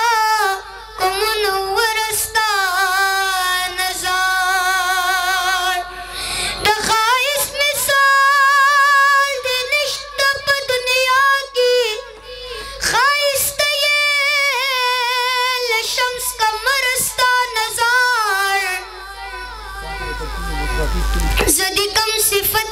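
A boy singing a Pashto naat solo in a high voice, with long held notes that waver, and short breaths between phrases.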